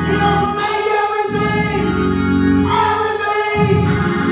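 Gospel singing: a lead voice through a microphone holding long, drawn-out notes, with other voices joining in.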